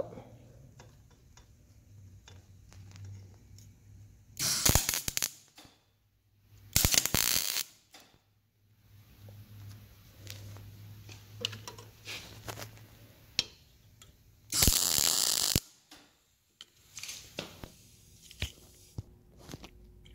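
Welder laying three short tack welds: three bursts of arc crackle, the first and last each about a second long, with a low steady hum between them.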